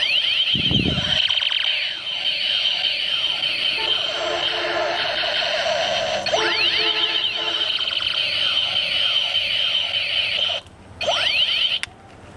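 Electronic sound effects from a battery-operated pink plastic toy space gun's small speaker: repeated laser-like sweeps in pitch over a steady shrill tone. The sound breaks off briefly about a second before the end, then starts again.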